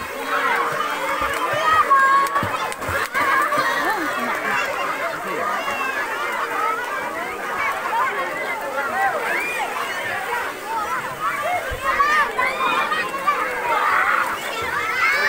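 Many children's voices chattering and calling out over one another, with some light splashing of water.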